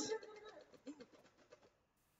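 The tail of a man's trilled, warbling vocal imitation of a drum roll, dying away within the first moment, then near silence.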